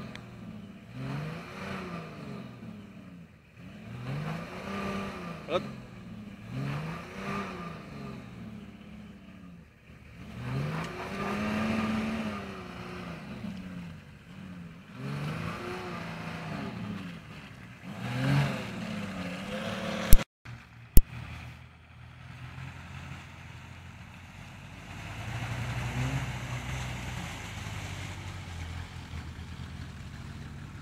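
Nissan Patrol off-roader's engine revving up and down over and over, about once every one to two seconds, as it works through deep mud ruts. About two-thirds of the way in, two sharp clicks break it off, and a steadier engine sound takes over, swelling a little near the end.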